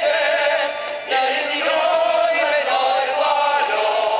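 A group singing a song together to musical accompaniment, men's voices to the fore, with a short break in the line just before a second in.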